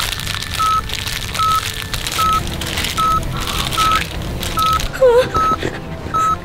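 Hospital heart-rate monitor beeping steadily, one short beep about every 0.8 seconds, over a constant rustling noise. A short dipping tone comes about five seconds in.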